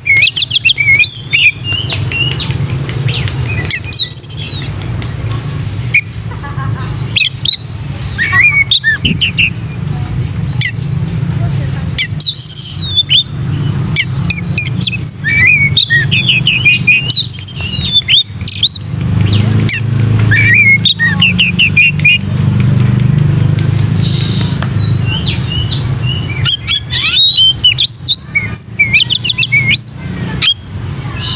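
Oriental magpie-robin (kacer) singing loudly in runs of rapid, varied whistled phrases broken by short pauses, over a steady low hum.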